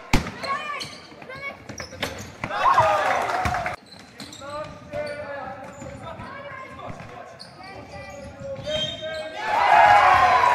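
Basketball bouncing and thudding on a gym floor, with players and spectators calling out in the echoing hall. Loud shouts swell up about two and a half seconds in and again near the end.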